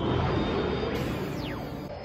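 Film soundtrack music with space-battle sound effects, including a falling-pitch whoosh about a second and a half in.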